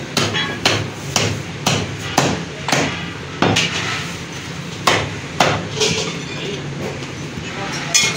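Heavy butcher's cleaver chopping lamb ribs on a wooden chopping block: a run of sharp chops about two a second, then a few more spaced further apart, stopping a little past halfway.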